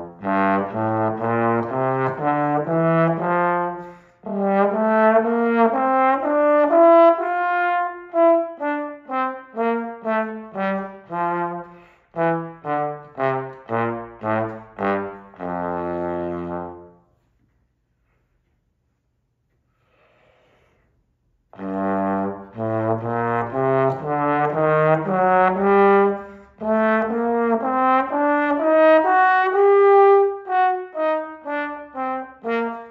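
Trombone playing scales in separate tongued notes: an F major scale rising and then falling, a pause of about four seconds, then a G harmonic minor scale starting to climb.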